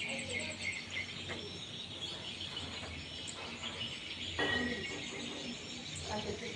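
Outdoor background of birds chirping and insects trilling, with a brief higher call about four and a half seconds in.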